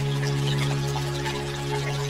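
Ambient relaxation music: a steady low drone held without a break, with faint scattered droplet-like trickling sounds above it.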